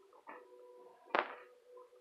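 A single sharp click about a second in, over a faint steady hum made of a few high, even tones.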